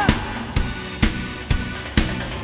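Drum kit playing a steady beat, a hit about every half second, over sustained backing music.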